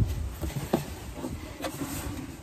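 Cardboard rubbing and scraping as an inner shipping box is pulled out of an outer cardboard box, with a couple of faint knocks, over a low rumble.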